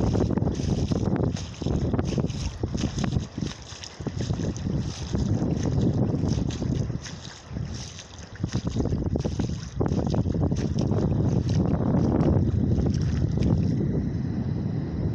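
Strong, gusty wind buffeting the phone's microphone, surging and falling, with brief lulls about four and eight seconds in.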